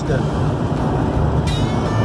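Steady low drone of a motorhome driving at highway speed, heard from inside the cab. A thin high tone joins about one and a half seconds in.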